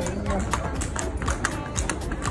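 Horses' hooves clip-clopping on a cobblestone street as several horses are led past at a walk: an irregular run of sharp clicks.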